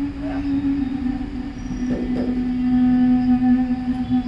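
Background music drone: a loud, low held note that steps slightly lower about two seconds in, with a fainter higher note held above it.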